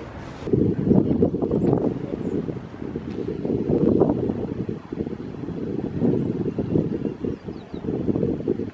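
Wind buffeting the microphone: a low, gusty rumble that rises and falls irregularly.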